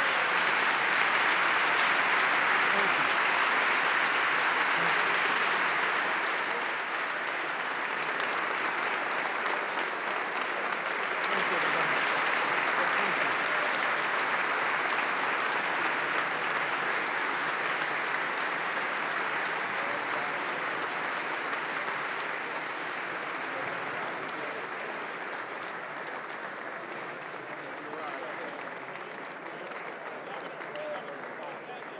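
A large audience giving a standing ovation: sustained applause that eases a little about seven seconds in, swells again around eleven seconds, then gradually tapers off toward the end.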